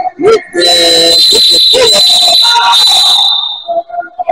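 Basketball referee's whistle blown in one long shrill blast of nearly three seconds, stopping play.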